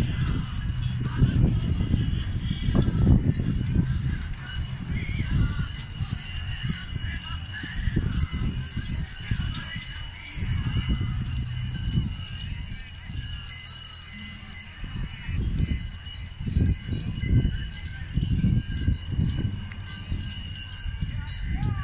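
Harness bells on a team of mules jingling and ringing without a break, over an uneven low rumbling noise.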